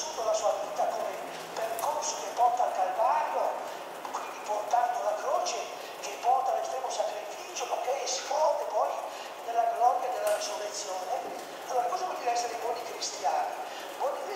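Old copper magnet wire being pulled out of an electric motor's stator slots by hand: a steady run of short squeaks and scrapes as the wire drags through the slots, with light clicks and ticks as strands snap free and spring about.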